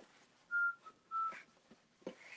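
A person whistling two short high notes about half a second apart, the second slightly lower than the first.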